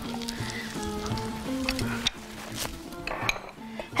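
Kofta fingers sizzling gently in oil in a frying pan over very low heat, with a few light clinks of utensils and dishes later on, over background music.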